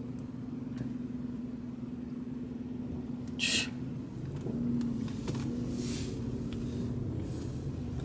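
Car engine idling, heard inside the cabin as a steady low rumble and hum, with a brief hiss about three and a half seconds in.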